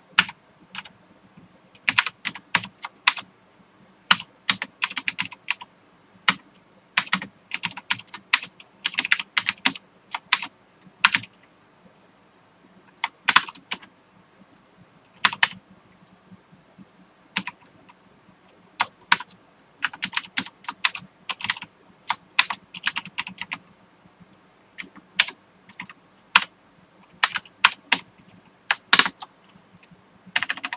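Typing on a computer keyboard: irregular runs of quick keystrokes separated by pauses of a second or two.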